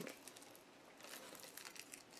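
Faint crinkling of plastic packaging being handled, a scatter of small soft crackles.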